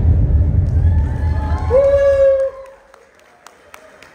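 A live audience in a large hall cheering and clapping as a fast-beat dance song ends, with one high held "woo" about two seconds in. The noise dies down by about halfway, leaving the hall fairly quiet with a few faint clicks.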